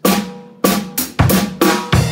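A short drum fill on an acoustic drum kit: about eight quick snare and drum strokes in two seconds, with deep bass drum thuds among them.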